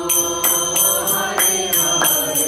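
Devotional chanting (kirtan) with voices singing over hand cymbals struck in a steady beat, about two and a half strikes a second.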